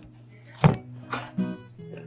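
A few sharp knocks and clatters of food being prepared at a kitchen counter, the loudest about two-thirds of a second in, over a low steady hum. Plucked guitar music comes in about halfway through.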